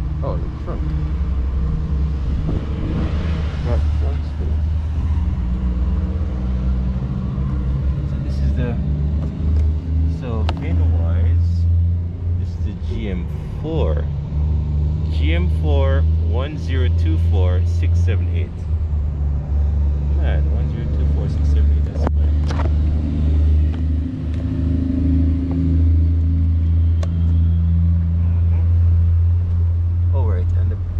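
A car engine idling: a steady deep hum that swells and eases a little, with people's voices talking at times, clearest in the middle.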